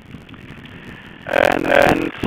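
Telephone conference line with a low hiss, then a person's voice comes in loudly for the last part, its sound narrowed by the phone connection.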